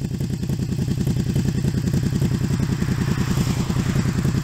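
Honda VTZ250's 250 cc liquid-cooled four-stroke V-twin idling steadily through an aftermarket silencer, an even, rapid exhaust beat.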